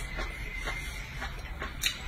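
A person chewing a mouthful of food with the mouth open, close to the microphone: a string of sharp wet smacks and clicks, a few each second.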